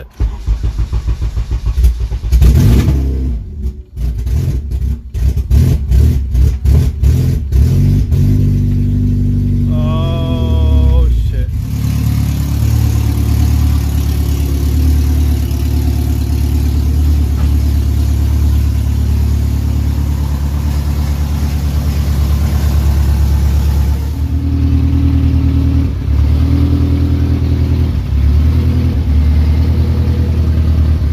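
Honda K24 four-cylinder engine swapped into a Civic starting for the first time: it fires in choppy, uneven bursts for the first several seconds. It then catches and settles into a steady idle, which shifts slightly a little before twenty-five seconds in.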